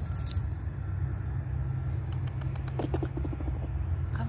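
Clicks and light rattling of a wire-mesh live trap being handled, with a quick run of clicks a little past the middle, over a steady low rumble.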